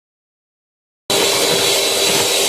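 Silence for about a second, then an electric hand mixer cuts in suddenly, running steadily with a high whine as its beaters whip an egg and sugar batter.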